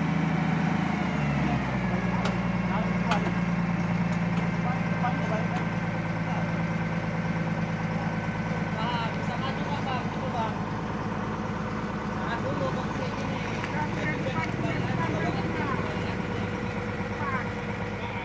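A truck's diesel engine idling steadily after being revved, its pitch dropping to idle about a second in.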